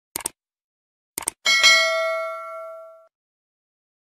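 Subscribe-animation sound effects: two quick double clicks, then a bell ding that rings and fades out over about a second and a half.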